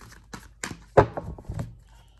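A deck of oracle cards being shuffled by hand: a few short slaps and flicks of card against card, with one louder thunk about a second in.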